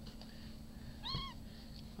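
A Japanese Bobtail kitten about four weeks old gives one short, high-pitched mew, rising then falling, while wrestling with a littermate.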